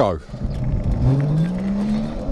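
Electric motor of a 3000 W 48 V e-bike whining under full throttle, its pitch rising steadily from about a second in as the bike picks up speed, over a low rumble.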